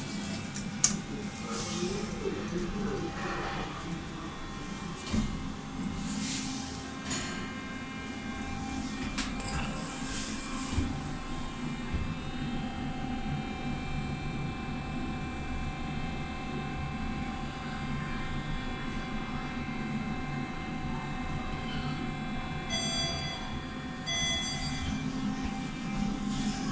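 Passenger lift travelling between floors: a steady hum and whine from the car and its drive, with a sharp click just under a second in as the car button is pressed and a short high tone near the end.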